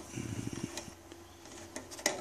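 Screwdriver turning a screw out of an aluminium amplifier cover: soft clicking, mostly in the first half second, with a couple more ticks near the end.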